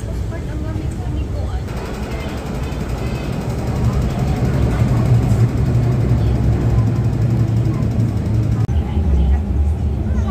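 Metro train arriving at a station platform behind screen doors: a low rumble that swells about four seconds in. After an abrupt change near the end, a deeper, steady rumble of the train running, heard from inside the carriage.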